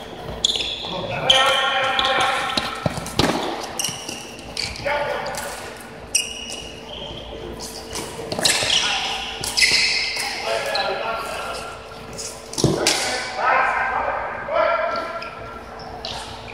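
Floorball play in a gym: sharp clacks of plastic sticks and the hollow ball against the floor and goal, with players calling out, echoing in the hall. The loudest knocks come about three seconds in and again near the end.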